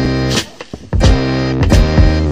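Background music: a guitar-led track with bass and a beat, which drops out briefly about half a second in.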